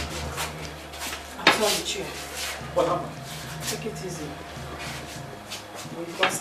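A few short spoken phrases between people in a small room, over a low steady hum that stops about five seconds in.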